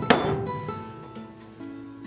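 A ball-peen hammer taps once on the steel shank of a Millers Falls No. 35 auger bit extension, which is laid across a piece of railroad iron to take a kink out; the single sharp strike comes just after the start and rings briefly. Background music plays throughout.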